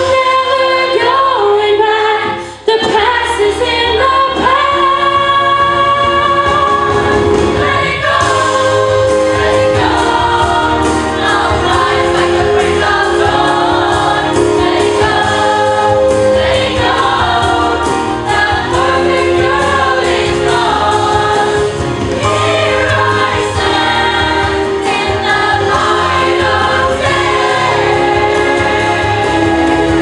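Youth choir singing together with a female soloist on a microphone, over accompaniment, with a brief break about two and a half seconds in.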